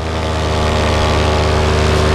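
Vittorazi Moster 185 single-cylinder two-stroke paramotor engine and propeller running at a steady pitch in flight.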